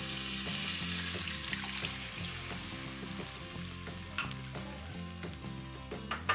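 Hot oil tempering of mustard seeds, urad dal and curry leaves sizzling in a kadai as water is poured in and stirred with a wooden spatula. The hiss eases gradually, with a single click about four seconds in and soft background music underneath.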